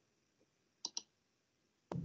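Two quick clicks close together about a second in, and another sharp click just before the end, over near silence.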